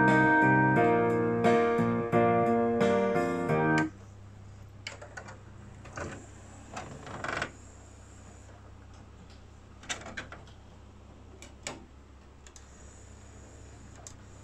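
Instrumental play-along music with piano and guitar plays from a Sony CDP-C315 five-disc CD changer and cuts off about four seconds in. After it, the changer's disc drawer mechanism whirs and rubs as the drawer opens, then clicks a few times as the carousel tray moves, over a steady low hum.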